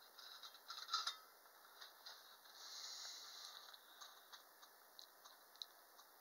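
Faint clicks from a wind-up tin toy's spring-and-gear mechanism as it is handled and set going, the loudest cluster about a second in, then a faint whir about halfway through and scattered light ticks as the weighted gondola arm turns slowly.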